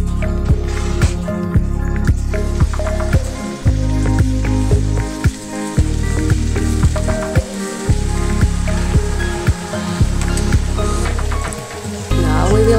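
Background music with a steady beat, over water spinach sizzling as it fries in oil in a pan.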